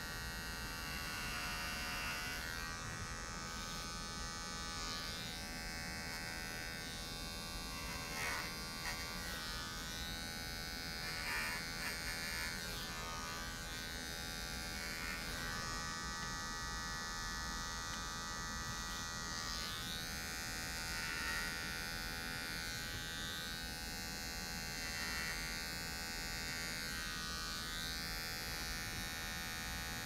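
Electric hair clippers running with a steady buzz as they cut long wet hair held on a comb, used for bulk removal of length.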